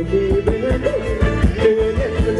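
Live band playing Thai ramwong dance music: a steady drumbeat and bass under a melody line that slides up and down.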